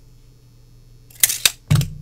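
A steel hinge and tape measure being handled and set down on a desk: a quick burst of sharp clicks a little over a second in, then a dull thump just before the end.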